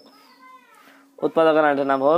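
A faint cat meow that rises and falls in a brief lull, then a person speaking loudly from just over a second in.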